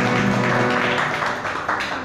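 Backing music of a Hindi film song ending: a held note fades out about a third of the way in, leaving short, repeated beats that die away.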